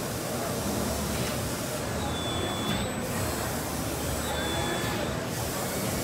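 HMT 2.5ECNC-SS all-electric CNC tube bender working a tube into a flat serpentine, with two brief high whines from its electric drives about two seconds in and again near five seconds, over steady exhibition-hall crowd chatter.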